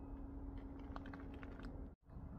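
Faint scattered clicks over a steady low hum, with the sound cutting out completely for a moment near the end.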